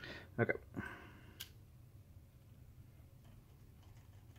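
A single sharp click from handling the hard drive in its drive tray caddy about a second and a half in, then only faint room tone.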